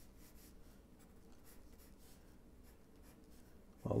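Wooden graphite pencil scratching faintly across drawing paper in short, irregular sketching strokes.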